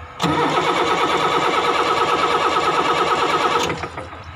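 Starter motor cranking a Tata Cummins 6BT six-cylinder diesel with a fast, even pulse for about three and a half seconds, then stopping suddenly without the engine firing. The fault given is very low fuel pump pressure.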